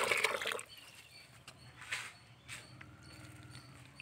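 Water splashing onto a pile of dry coconut husk fibres in short bursts, the loudest right at the start and a few smaller ones about two seconds in, as the fibres are wetted to soak before being made into coco peat.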